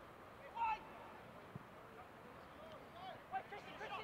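Faint, distant shouts of footballers on the pitch over quiet outdoor ambience, with one short call about half a second in and a few more near the end.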